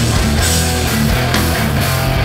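Hardcore punk band playing live at full volume: distorted electric guitars and bass over drums with regular cymbal and snare hits.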